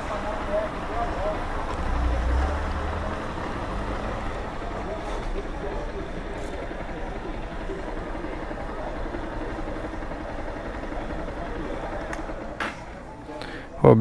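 Honda CG 160 Fan motorcycle's single-cylinder engine idling steadily at the kerb, under street noise and faint voices nearby. Two short clicks come near the end.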